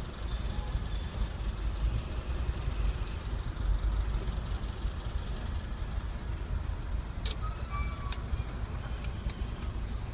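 Low steady rumble of a car's idling engine and the traffic around it, heard from inside the car cabin, with a few short sharp clicks in the last three seconds.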